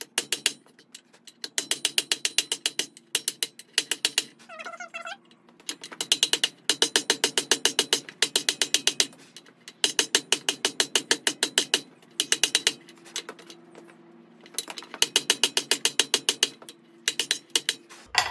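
Blacksmith's hand hammer striking a red-hot mild steel bar lying in a cast iron swage block: rapid, evenly spaced blows in runs of a few seconds with short pauses, curling the flat stock into a tube for forge welding.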